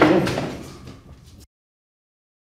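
A heavy door slamming shut with a loud bang that rings on and dies away over about a second and a half, then cuts off abruptly.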